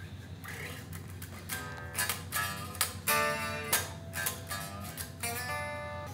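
Gibson or Epiphone Les Paul Standard 50s solid-body electric guitar played: after a quiet start, a few chords are struck and left to ring, beginning about a second and a half in.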